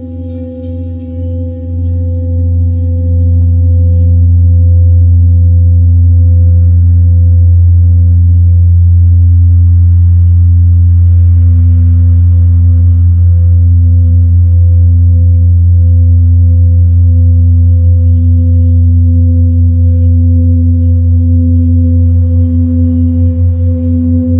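A large singing bowl being rubbed around its rim with a mallet: its deep hum swells over the first few seconds, then holds steady with a slow wavering pulse and ringing overtones. A thin, high, steady chirring of bell crickets (suzumushi) runs underneath.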